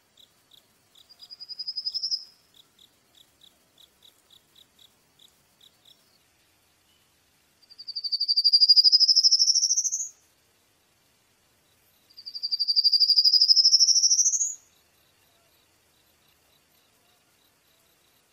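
High-pitched animal calls: short chirps repeated about three times a second, with a short rising trill about two seconds in. Then come two loud, long rising trills of about two and a half seconds each, a few seconds apart.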